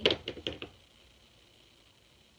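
A quick run of five or six sharp clicks and knocks in the first moment, the first the loudest: hard makeup items being handled and set down, such as a compact eyeshadow palette and brush. Then only faint room tone.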